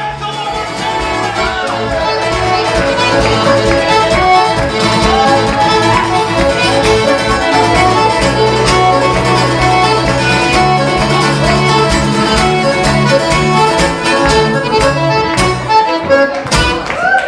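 Live folk music from a piano accordion and a strummed acoustic guitar playing a lively tune over a quick, steady beat. It swells in the first couple of seconds.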